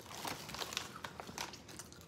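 Plastic chip bag crinkling and rustling as a hand reaches in for chips, in a run of faint, irregular crackles.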